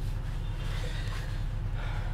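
A person's faint breaths close to the microphone, over a steady low hum.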